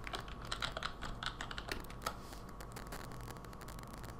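Computer keyboard typing: a quick run of keystrokes for about two seconds, entering a password, then only a few scattered clicks.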